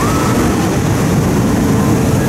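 Steel roller coaster train running along its track with a steady rumble as it passes.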